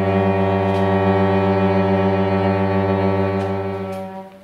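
Cello bowed on one long, low sustained note, held steady with a fast pulsing ripple in the tone, then fading away at the end.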